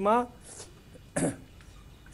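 A man's chanted Vedic Sanskrit verse ending on a held syllable, then about a second later a single short throat clearing.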